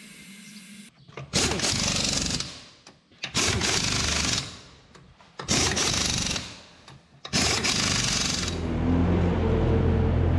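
Pneumatic impact wrench running in four bursts of about a second each, driving the lug nuts onto a skid steer wheel. Near the end, the Bobcat S570 skid steer's engine starts running steadily.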